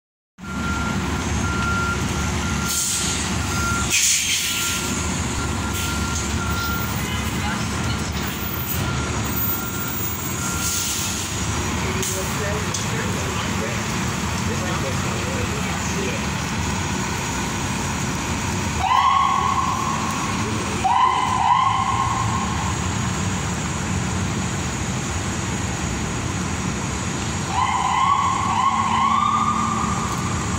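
City transit buses idling at a stop, a New Flyer Xcelsior XD40 diesel among them: a steady engine rumble throughout, with short sharp hisses about 3 and 4 seconds in. In the second half a few short rising tones sound, one after another, the last run near the end.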